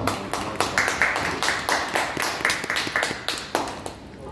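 A small audience clapping, dying down near the end.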